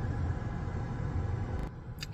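Steady low rumble and hiss inside a parked car's cabin, which cuts off suddenly near the end.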